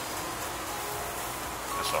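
Steady background hiss and low hum through a pause in talk, with a man's voice starting again near the end.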